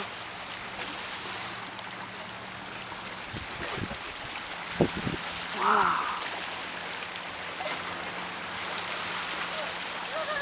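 Small lake waves lapping and washing among the stones of a rocky breakwater, a steady rushing sound, with a few dull knocks around the middle and a brief voice-like sound just before six seconds in.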